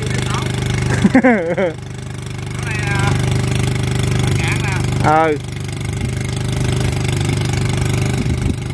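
Kato HD512 excavator's diesel engine running steadily at idle, a little louder from about two seconds in, with laughter and a few short called words over it.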